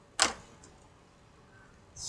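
A single short, sharp click about a fifth of a second in, then quiet room tone.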